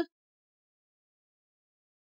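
Near silence: the end of a spoken word at the very start, then no sound at all.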